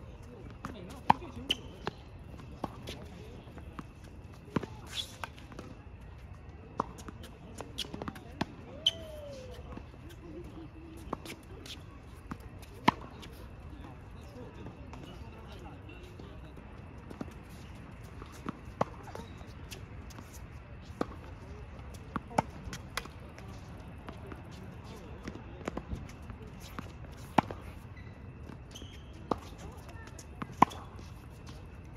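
Tennis balls being hit with rackets and bouncing on an outdoor hard court: a string of sharp pops at irregular intervals, about one every second or two.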